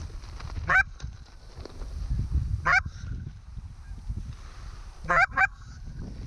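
Canada geese honking: four short, sharp honks, the first two about two seconds apart and the last two in quick succession, over a low rumble of wind on the microphone.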